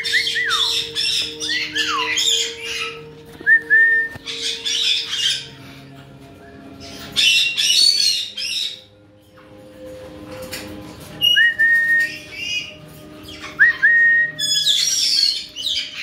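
Caique parrots squawking, with harsh calls mixed with short, clear whistled notes. The calls come in bursts about a second or two long, a few seconds apart.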